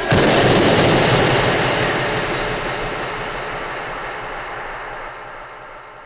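A sudden loud crash as the electronic soundtrack music ends, its noisy tail dying away slowly over several seconds.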